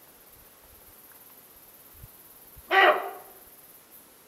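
A sika deer hind gives a single loud alarm bark near the end, dying away over most of a second.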